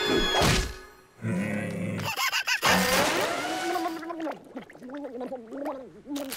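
Cartoon sound effects, a swish and a thunk, then a cartoon character's wordless grumbling voice, rising and falling in pitch.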